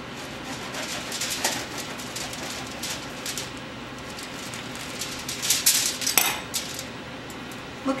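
A knife sawing through the crust of a freshly baked loaf of Italian herb bread: a series of short rasping strokes that grow loudest about five and a half to six seconds in.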